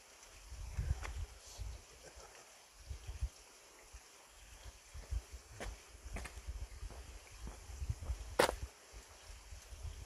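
Wind buffeting the microphone in uneven gusts, with a few faint clicks and one sharp click about eight seconds in.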